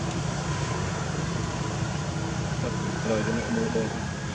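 A steady low rumble, with a person's voice briefly heard about three seconds in.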